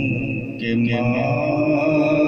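A man's voice singing a naat, an Urdu devotional song, amplified through a microphone and drawing out long held notes.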